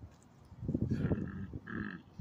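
A straw pushed into a plastic drink cup, squeaking twice against the plastic amid crackly handling of the cup.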